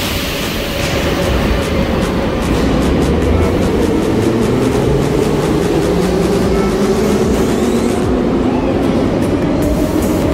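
Metro trains in an underground station: a brief hiss at the start, then a steady rumble with a motor hum that grows louder over the first few seconds as a train approaches the platform.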